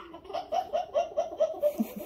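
A young child laughing during peek-a-boo: a quick run of about eight short, high-pitched ha-ha pulses.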